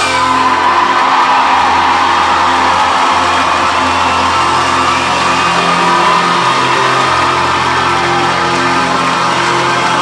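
Loud live band music built around guitar, with long held low notes. Whoops and shouts from a club crowd are mixed in.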